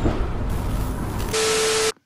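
Editing sound effect: a loud hiss of noise that brightens about half a second in. A steady horn-like tone joins it for the last half second, and both cut off suddenly.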